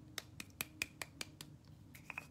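A small jar of setting powder shaken in the hand, its lid and contents clicking sharply about five times a second.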